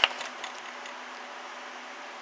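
Steady background hiss with a faint, even hum underneath: indoor room tone with no distinct event.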